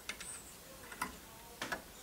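A few faint, sharp clicks and ticks, irregularly spaced, from a small unpowered metal fan impeller inside a stereo chassis being turned and handled by fingers.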